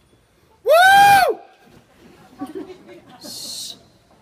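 One loud whooping 'woo' from an audience member close to the microphone, rising and then falling in pitch, lasting under a second. Scattered audience murmur follows, with a short hissing 'shh' near the end.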